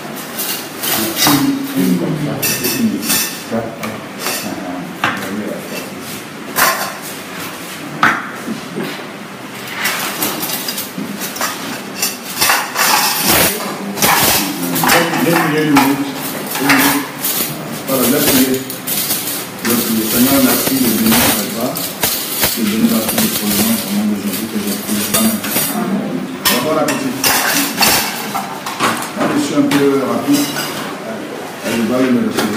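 Cutlery and dishes clinking: a metal serving spoon scooping food from a large metal platter and knocking against plates, many short clinks throughout, with people talking in the background.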